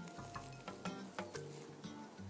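Faint background music with soft held notes, over light crackling and small clicks from hands handling artificial flowers and fabric.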